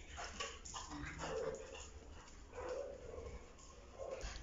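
Pencil scratching on paper as words are written, with two faint, short whines in the background.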